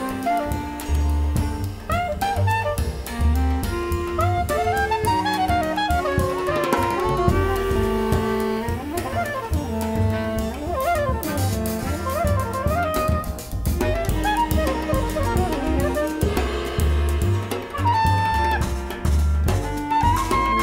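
A jazz ensemble playing. A soprano saxophone leads with a melody of quick runs and held notes over low bass notes and a drum kit with cymbals.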